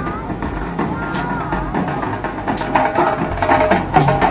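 Street procession music: drums played by a marching troupe, mixed with crowd voices, getting louder over the last second.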